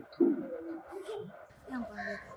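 A dove cooing in the background, a few low, soft coos.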